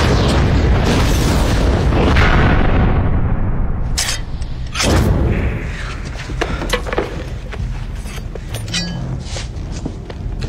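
A deep, loud rumbling boom with a rising hiss, then two sharp cracks about four and five seconds in. After the cracks it settles to a lower rumble with scattered clicks.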